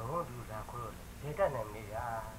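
Speech only: people talking in Burmese, film dialogue.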